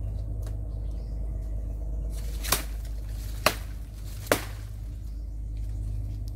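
Three sharp chops of a machete striking a nipa palm's stalk, about a second apart, over a steady low hum.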